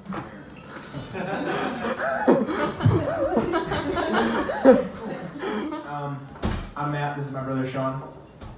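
Wordless vocal noises and chuckling, the pitch sliding up and down in swoops, then a single sharp knock, then a steady held note near the end.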